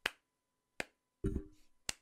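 A slow hand clap: one person clapping three times, about a second apart, each clap a single sharp smack. It is the mock slow clap of an unimpressed audience member.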